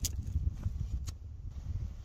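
Knife blade being worked into the end of a green forked stick to split it, with two sharp clicks of the wood giving, one at the start and one about a second in, over a low rumble.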